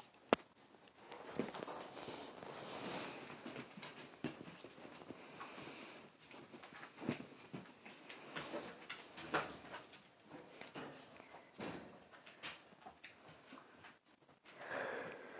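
A dog moving about on a bed close to the phone: faint, irregular sniffing and shuffling sounds, with a sharp click just after the start.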